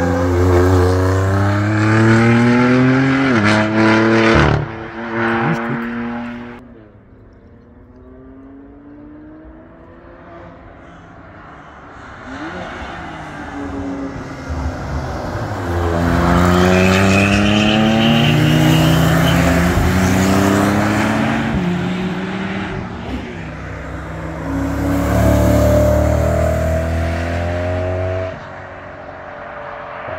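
Race cars accelerating past on a circuit, their engine notes climbing in steps with quick upshifts. One car passes loudly in the first six seconds and fades. Another builds from about twelve seconds, shifts up several times and drops away near the end.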